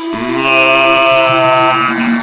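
Music with a deep chanted voice holding one long, steady note that stops just before the end.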